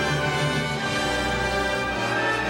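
Full orchestra playing sustained chords, with a deeper bass line coming in about a second in.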